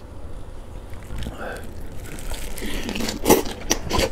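Close-miked eating of fresh napa cabbage kimchi with rice: quiet at first, then wet chewing and crunching with a few sharp mouth clicks in the second half.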